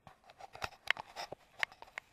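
Small stones clicking and rattling against a perforated metal sand scoop as it is handled and picked through: a string of irregular sharp ticks.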